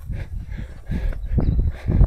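A runner's breathing and footsteps on the trail, with irregular wind rumble on the microphone and a few soft thuds about a second and a half in.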